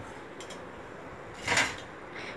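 Fried kachori-style snacks dropped from a slotted ladle onto a perforated stainless-steel colander plate, a short clatter about one and a half seconds in, over a faint steady hiss.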